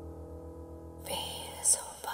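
A horror-dance soundtrack: a low, pulsing drone fades out, and about halfway through an eerie whisper comes in, with a short, sharp hiss near the end.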